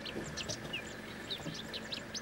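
Several birds chirping: short, high, quickly sweeping calls, several a second, over a faint steady hum.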